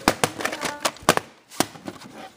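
Sharp plastic clicks and clacks of VHS cassettes being handled, several knocks at irregular intervals.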